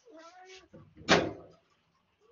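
A short, high-pitched cat-like meow, then about a second in a louder, brief breathy hiss-like noise.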